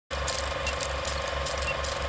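Film projector clatter, as used over a film-leader countdown: a steady rhythmic mechanical rattle, about four to five beats a second, over hiss, with a faint steady tone underneath.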